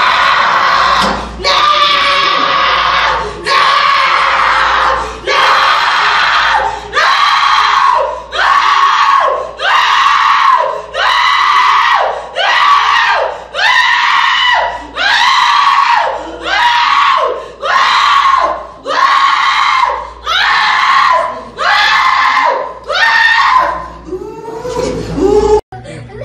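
A woman screaming over and over, about eighteen loud, high cries of roughly a second each with only short breaks between them. The screaming comes during a Quranic exorcism (ruqya), which the video presents as the jinn in her crying out as the spell is broken.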